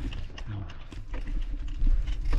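Bicycle rolling over a rough dirt trail, with tyres crunching and the bike rattling in quick irregular clicks and knocks over bumps. A steady low wind rumble sits on the microphone underneath.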